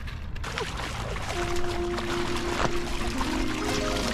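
Shallow river water running and splashing over stones, with background music fading in about a second and a half in and building toward the end.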